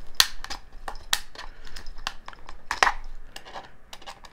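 Irregular plastic clicks and snaps as a flat-head screwdriver pries at the seam of a portable hard drive's plastic enclosure, its case cracking and clips letting go one at a time.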